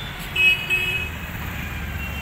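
A vehicle horn toots once for about half a second near the start, over a steady low rumble of street traffic.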